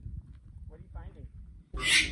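A toddler's faint short vocal sounds over a low rumble, then near the end a sudden loud, high-pitched shriek from a toddler.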